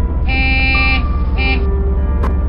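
Vehicle horn honking twice, a long honk then a short one, over a steady low engine drone.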